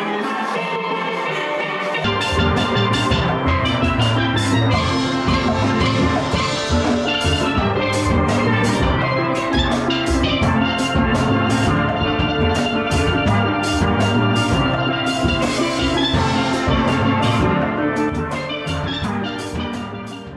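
Steel band playing a lively tune on steel pans, backed by a drum kit. The bass and drums come in about two seconds in, and the music fades out near the end.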